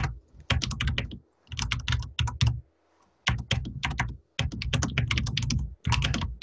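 Typing on a computer keyboard: quick runs of keystrokes with short pauses, about a second in and again around three seconds in.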